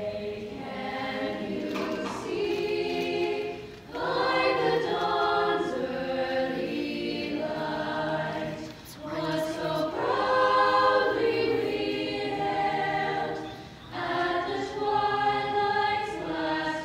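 A choir singing unaccompanied in long held phrases of about four to five seconds each, with short breaks between them.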